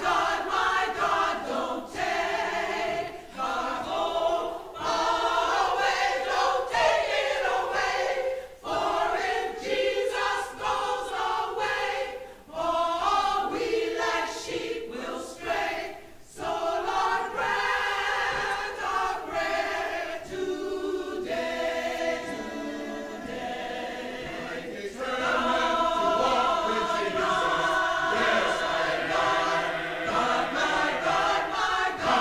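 Mixed choir of men and women singing a spiritual in phrases, softer for a few seconds past the middle and fuller again toward the end.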